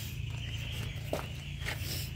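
A chainsaw being handled on the floor, with a couple of faint knocks, over a steady low hum. The engine is not running.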